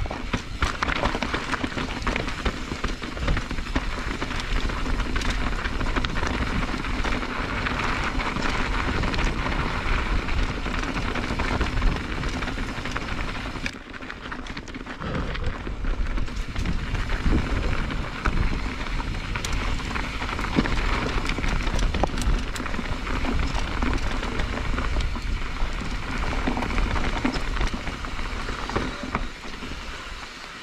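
Mountain bike descending a rocky trail: knobby tyres crunching over loose rock and gravel, with the bike rattling over the bumps. The noise eases briefly about halfway through.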